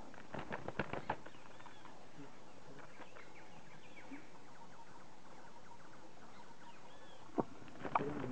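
A quick burst of about half a dozen sharp knocks and flutters half a second in as a large red-crested woodpecker flaps and strikes at a snake in its nest hole, then faint bird chirps from the surrounding forest, and one sharp tap near the end.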